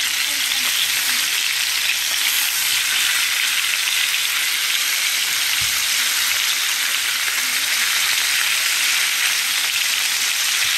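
Seasoned chicken pieces sizzling steadily in hot oil in a nonstick frying pan, being browned on both sides.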